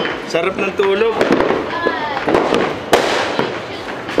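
Firecrackers and fireworks going off in a scattering of sharp cracks, the loudest about three seconds in, with voices over them.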